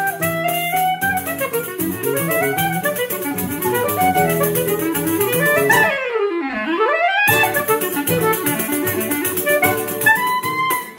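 Choro trio playing: an Oehler-system clarinet carries the melody over a seven-string acoustic guitar and the jingling shuffle of a pandeiro. A little past the middle the pandeiro drops out for about a second while a quick run dips low and climbs back, then the pandeiro comes back in.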